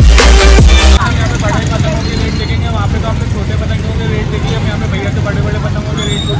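Loud electronic dance music with a heavy beat cuts off suddenly about a second in. Busy street-market hubbub follows, with several background voices chattering over street noise.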